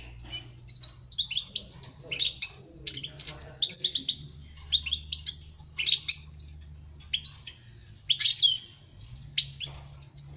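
European goldfinch singing: bursts of rapid twittering and chirping notes, some sliding sharply in pitch, broken by short pauses.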